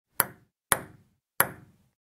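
Three sharp, short clicks, the second about half a second after the first and the third about 0.7 s later, each dying away quickly.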